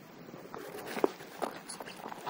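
A few soft, irregular knocks and rustles close to the microphone from a small dog moving about and brushing against the camera. The sharpest knock comes about a second in.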